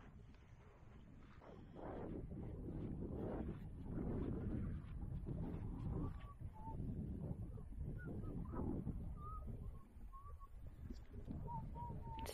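Wind buffeting the microphone with an uneven low rumble, joined from about halfway through by a few faint, short bird calls.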